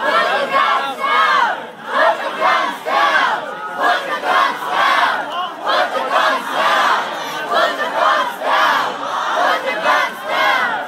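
Crowd of protesters shouting and yelling, many loud voices overlapping without a break.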